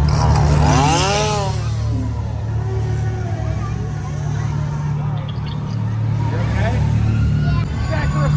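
Scare-zone ambience: a steady low droning soundscape, with a long wailing cry that rises and then falls in pitch about a second in, and scattered crowd voices.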